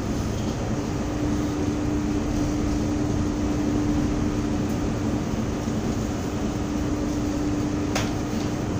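Steady drone of a small tanker under way at sea: a constant low machinery hum under an even rushing noise of wind and sea, with no break or change.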